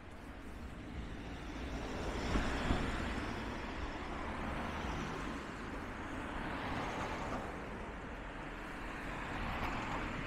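Cars driving past on a town street: engine and tyre noise swelling and fading with each pass, the loudest about two to three seconds in and more passes near the end.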